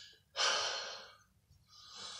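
A man breathing heavily: one loud breath about half a second in, then a softer breath near the end, as he steadies himself after an emotional moment.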